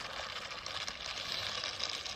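Electric ducted fan of a small FMS F-35 RC jet running as it taxis away down the runway, heard at a distance as a steady hiss.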